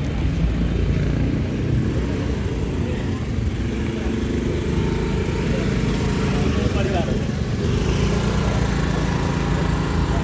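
Motor scooter engine running steadily with a low rumble, under people's voices.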